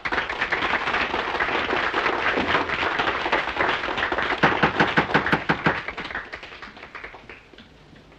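Audience applauding: a burst of many hands clapping that starts suddenly, goes on for about six seconds with a few louder single claps, then dies away.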